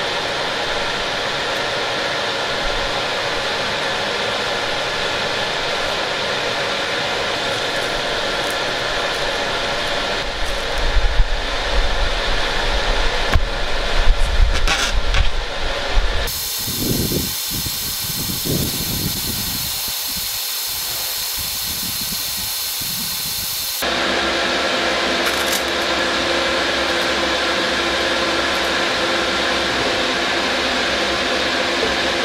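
TIG welding arc hissing and buzzing on steel box section, steady apart from a louder, uneven stretch. The tone changes abruptly twice, about 16 and 24 seconds in.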